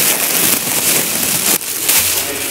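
Close rustling and crinkling of a plastic bag of hot cross buns being handled against the microphone, with a short knock about one and a half seconds in.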